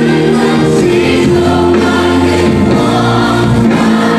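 Live worship band playing a song: two women singing together into microphones over bass guitar, electric guitar and keyboard.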